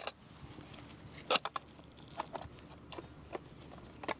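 A handful of light clicks and taps of aluminium cot frame tubes being handled and dropped into the holes of the cot's side rail, with a sharp click at the start and quiet gaps between.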